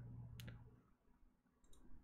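Near silence with a single sharp computer mouse click about half a second in, then a few faint ticks near the end.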